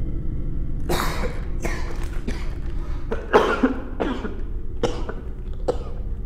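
Footsteps crunching over a floor strewn with flaking debris, about one step every second, over a steady low rumble.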